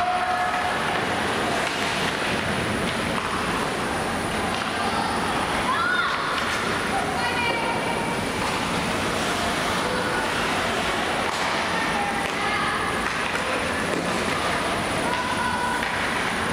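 Ice hockey in play in a near-empty arena: a steady rush of skates on ice and arena noise, with short shouted calls from players every few seconds.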